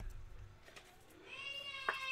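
A low thump at the start, then a high-pitched, drawn-out call or squeal lasting about a second from just past the middle, with a sharp click near its end.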